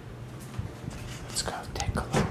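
Soft whispered speech, with a few short hissing sounds in the second half; no guitar is being played.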